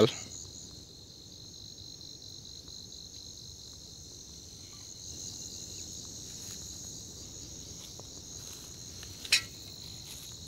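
Steady, high-pitched chorus of insects in the evening woods, with one brief sharp sound standing out about nine seconds in.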